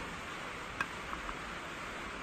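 A light click a little under a second in, then two fainter ticks, as a distributor is handled and lowered toward its bore in the engine, over a steady low hiss.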